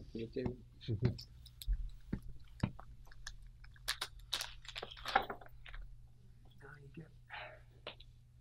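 Faint, low murmured voices with scattered small clicks and rustles of handling.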